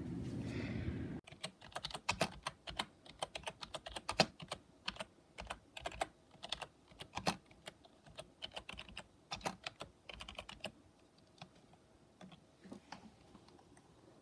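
Typing on a computer keyboard: a quick run of key clicks that thins out to a few scattered clicks after about ten seconds. A steady low rumble cuts off suddenly about a second in.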